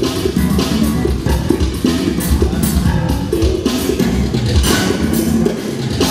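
Live band music with electric bass guitar, keyboard and drum kit playing a steady, beat-driven dance tune.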